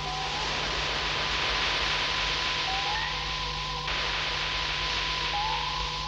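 Steady hissing sound effect, as of gas rushing into a sealed chamber, over a sustained electronic drone with brief sliding tones. The hiss thins a little about four seconds in and fades out at the end.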